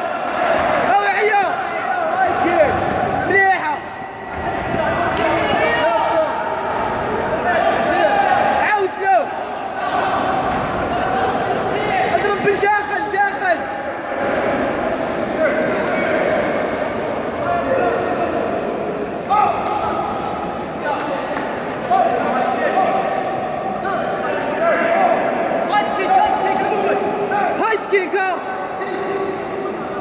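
Men's voices shouting and calling out, echoing in a large sports hall during a kickboxing bout, with a few sharp thuds of blows landing.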